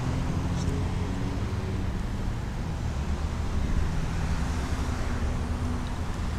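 Street traffic: car engines running and vehicles passing close by, a steady low rumble.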